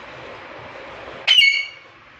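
Alexandrine parakeet giving one short, loud call a little past the middle, over a steady background hiss.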